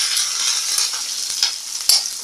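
Chopped onion and green chillies sizzling in hot oil in a steel kadhai, stirred with a spatula, with a sharp clink near the end.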